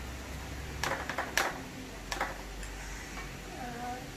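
A spatula knocking and scraping against a stainless steel mixing bowl full of brownie batter: a quick cluster of sharp clicks about a second in and a couple more just after two seconds.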